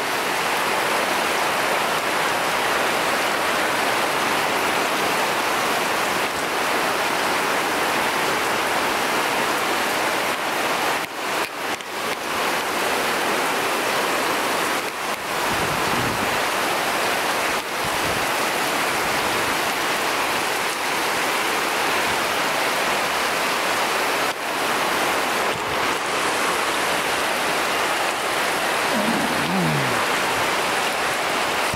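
Heavy tropical downpour: a steady, dense hiss of rain falling on rainforest foliage and ground.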